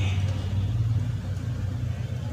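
A steady low background rumble.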